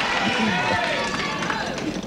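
Voices over a steady studio-audience noise. Right at the end, the game-show prize wheel starts spinning, its pointer clicking rapidly against the pegs.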